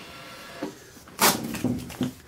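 Paper receipt torn off a cash register's receipt printer: a faint steady printer noise at first, then one sharp rip about a second in, followed by paper rustling.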